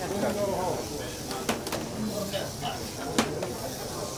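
Scattered voices of onlookers over the steady hiss of HO slot cars running on the track, with three sharp clicks, the last and loudest about three seconds in.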